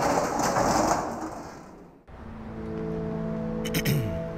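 A loud rushing, rumbling noise that fades over about two seconds and then cuts off abruptly, followed by a steady held chord of film score music.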